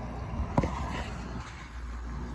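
One sharp click a little over half a second in, the kind made by handling a small diecast toy truck, over a steady low hum.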